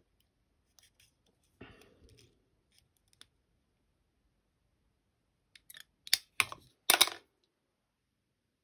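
A handful of sharp clicks and snips from fly-tying tools being handled at the vise, bunched together in the last couple of seconds. The two loudest come close together near the end.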